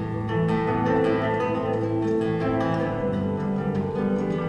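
Lever harp and nylon-string classical guitar playing an instrumental duet: plucked notes ringing over sustained bass notes.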